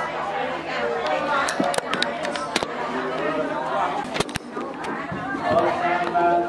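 People talking, with several voices and a few sharp clicks; near the end, steadier held voice tones begin.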